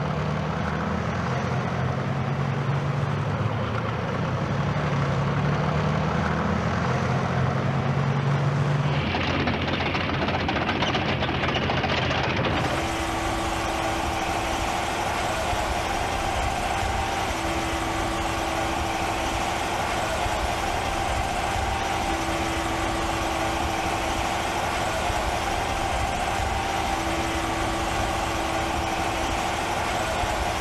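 Heavy tracked missile launcher vehicle's engine running. The drone changes abruptly about nine and again about twelve seconds in, then settles into a steady engine drone with a held whine over it.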